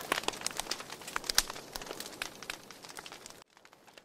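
Wood fire crackling with irregular sharp pops, fading away and cutting off abruptly about three and a half seconds in.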